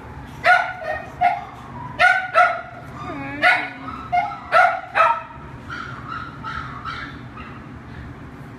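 A dog barking repeatedly: short, sharp barks in twos and threes for about five seconds, then fainter barks.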